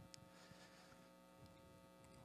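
Near silence: a faint steady electrical hum under the room tone.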